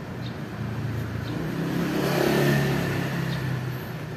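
A motor vehicle driving past: a low engine hum and road noise swell to a peak about two and a half seconds in, then fade.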